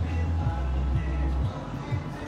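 Video slot machine's game music and spin sound effects playing while the reels spin, over a steady beat with a held bass note that drops away about one and a half seconds in.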